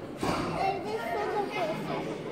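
High-pitched children's voices talking and calling out in a theatre audience, in short overlapping bursts.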